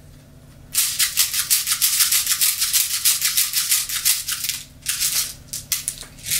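Plastic airsoft BBs rattling as they are poured from a bottle into an airsoft shotgun shell: a rapid run of small clicks starting just under a second in, easing off after about four seconds, with a few short rattles near the end.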